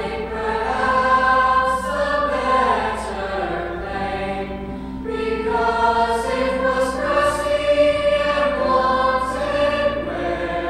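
Mixed teenage choir of boys and girls singing sustained choral harmony in long phrases that swell and ease, with a new phrase beginning about five seconds in.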